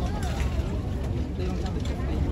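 Indistinct talking over a steady low rumble of street noise.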